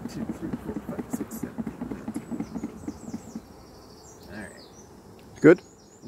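Honeybees buzzing inside a lidded plastic tub of powdered sugar as it is shaken for a sugar-roll varroa mite count, with a fast, uneven pulsing from the shaking. The shaking stops about three seconds in, leaving fainter buzzing.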